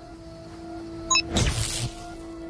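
Science-fiction teleport sound effect: a short bright ping about a second in, then a loud whooshing burst lasting about half a second, over a held low music note.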